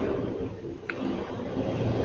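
Steady low rumble of a car's cabin while driving on the road, with a brief faint high chirp about a second in.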